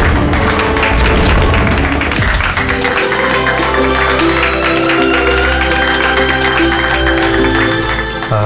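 Background music from a TV serial's score: a fast percussive beat for the first two seconds or so, then held notes over a steady deep bass with a slowly rising tone.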